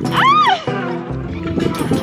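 A pop song plays throughout, and near the start a young woman gives one short, high-pitched squeal that rises and falls in pitch, a delighted shriek while swinging.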